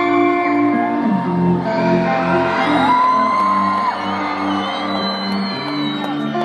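Live concert music heard through the PA of a large hall: slow, held chords opening a song, with a pitch glide about halfway through. The crowd whoops and shouts over it.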